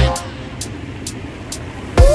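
Steady vehicle noise from a van's engine and road noise, in a two-second break in dance music, with faint hi-hat ticks about twice a second.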